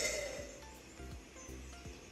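Faint recorded giant anteater sounds: a few short, low puffs spread over the two seconds, above a steady low hum.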